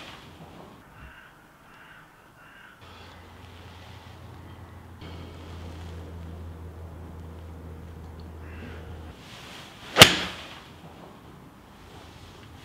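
Golf iron striking a ball off an artificial turf hitting mat: one sharp crack about ten seconds in, with a brief ring after it. A low steady hum runs for several seconds before it.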